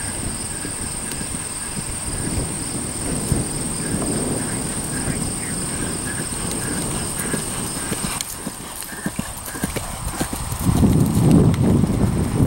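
Hoofbeats of a horse cantering on grass turf, growing louder near the end as it passes close by.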